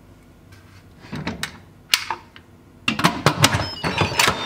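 An Instant Pot's stainless-steel pressure-cooker lid being set onto the pot and twisted shut. It makes a few light clicks, then a quick run of metal-and-plastic clicks and knocks near the end as it seats and locks.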